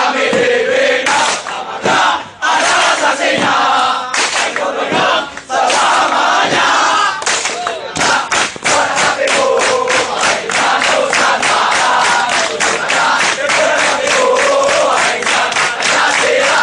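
A large group of men shouting a war-dance chant in unison, punctuated by sharp slaps on thighs and chests and stamping feet. The slaps grow into a quick, even run of about four a second in the second half.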